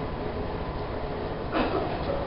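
Steady low rumble and hiss of room noise in a small hall, with a short soft sound about one and a half seconds in.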